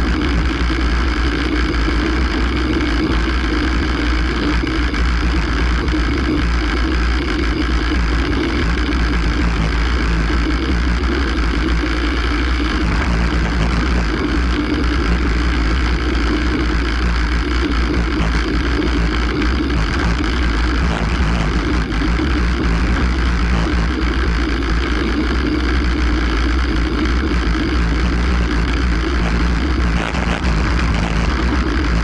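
Wind rushing over the microphone of a bike-mounted camera on a fast road-bike descent, with a steady deep rumble from the rough road shaking the bike and camera mount.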